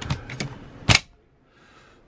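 Dometic caravan fridge-freezer door being handled and shut: a few light clicks, then one sharp latching click a little under a second in.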